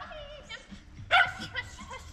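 A dog barking, with one loud short bark about a second in and quieter yips around it.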